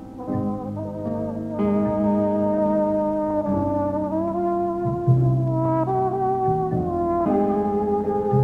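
Big band jazz recording with a trombone playing a slow melody of long held notes over sustained band chords.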